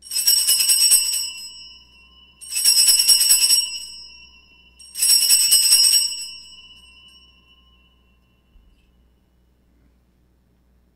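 Altar bells shaken three times, each a jingling ring of about a second that fades away afterwards. The rings mark the elevation of the chalice at the consecration of the Mass.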